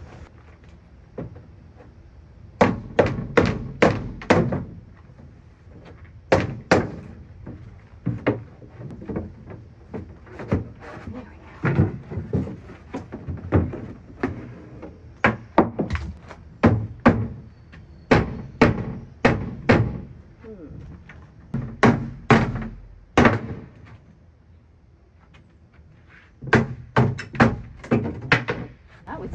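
Rubber mallet blows on a wooden cabinet panel, knocking it loose from the frame: clusters of four or five sharp knocks with short pauses between, going on through most of the stretch and easing off near the end.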